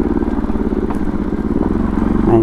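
Single-cylinder motorcycle engine running steadily under way, with a rapid, even exhaust pulse.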